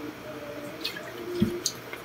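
A person gulping water from a plastic bottle: a swallow about two-thirds of the way in, and wet clicks of the mouth near the end.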